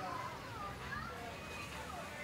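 Street ambience of passersby talking, with several overlapping voices, some of them high-pitched, over a steady low hum of the street.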